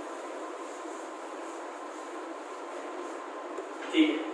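Steady, even background noise in a room, with no rhythm or strokes in it, and a brief louder sound right at the end.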